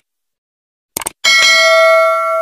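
Subscribe-button sound effect: a click about a second in, then a bright ringing bell ding for the notification bell.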